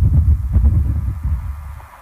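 A low, uneven throbbing rumble that fades away over the second half.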